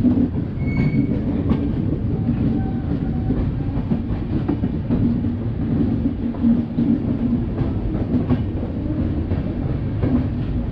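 Passenger train coach running along the track, heard from an open doorway alongside the coach: a steady rumble of wheels on rail with faint clicks at the rail joints. A brief faint squeal comes about a second in.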